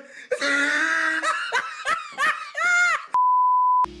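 A man laughing hard in several bursts, then a steady one-pitch beep of under a second near the end: a censor bleep dubbed over a word.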